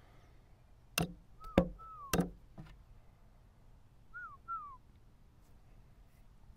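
Four sharp clicks in quick succession from chess moves during blitz play: pieces set down on the board and the chess clock's buttons pressed. A bird gives two pairs of short falling whistled notes, one pair among the clicks and another a couple of seconds later.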